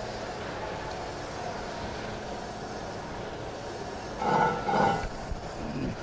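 Crankshaft grinder running with coolant on: a steady machine hum, then about four seconds in a louder, ringing grinding burst lasting about a second as the wheel is traversed to clean up the journal's radius and sidewall.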